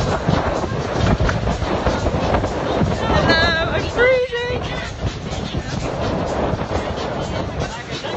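Wind buffeting the microphone on a sailboat under way, a steady gusty rumble and rush. About three seconds in there is a short wavering vocal sound, lasting roughly a second and a half.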